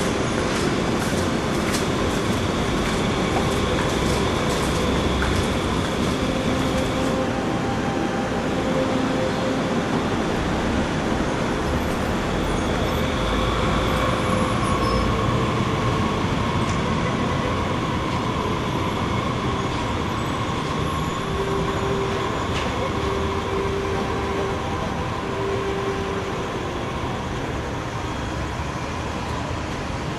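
Street noise: a steady rumble of moving traffic, with clicks in the first few seconds and a few held tones in the middle.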